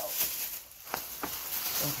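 A plastic shopping bag rustling as it is handled, with a few sharp crinkles.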